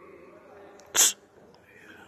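A person's single short, sharp burst of breath, a sneeze-like hiss, about a second in, much louder than the faint room murmur around it.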